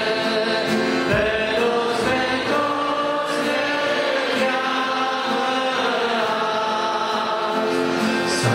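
A group of men singing a hymn together in slow, held notes, accompanied by acoustic guitar.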